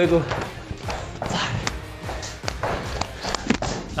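Background song with singing, over the footsteps and landings of badminton shoes on a wooden floor, several short knocks as the feet push off and land.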